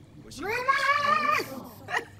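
One long, high-pitched cry lasting about a second, rising in pitch as it starts and dropping away at the end.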